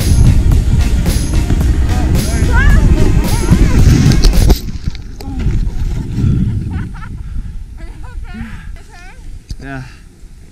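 Loud wind buffeting an action camera's microphone while snowboarding through snow, with music and a singing voice over it. About four and a half seconds in the rushing noise cuts off suddenly, leaving quieter background music with singing.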